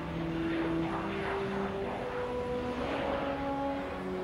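Jet engines of the presidential Boeing 707 taxiing, a rushing whine that swells and eases a few times, mixed with background music of slow held notes.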